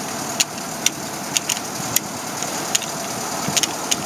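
Willys M38A1 Jeep's original four-cylinder F-head engine running steadily while the Jeep is driven, with scattered sharp clicks and rattles.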